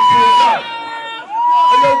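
A loud, high whistle sounding twice, each held steady for under a second with a quick rise in and drop at the end, over faint crowd noise.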